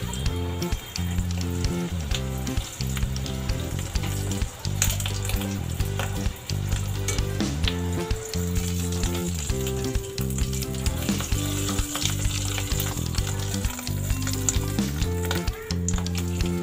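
Dal-stuffed puri deep-frying in hot oil in an iron kadhai: a steady sizzle throughout as the wire skimmer holds it under. Background music with changing low chords plays underneath.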